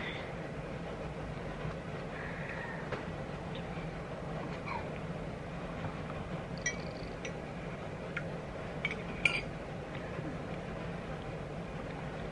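A metal teaspoon clinks lightly against a ceramic mug a few times in the second half. Underneath is a steady low room hum.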